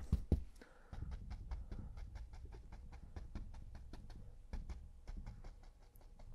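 Large flat bristle brush tapping and scrubbing oil paint onto the canvas: a quick run of faint dry ticks, several a second.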